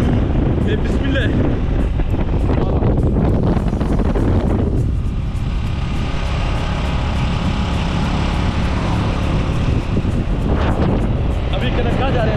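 Wind rumbling on the microphone over a motorcycle engine while riding along a road. About five seconds in, the sound cuts abruptly to a steadier, brighter hiss for about five seconds, then the rumble returns.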